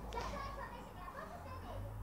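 Faint voices in the background, over a low steady hum.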